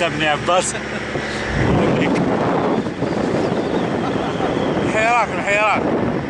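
Wind buffeting the microphone with a car's running noise underneath, setting in about a second and a half in. Near the end a voice gives several high, rising-and-falling yells.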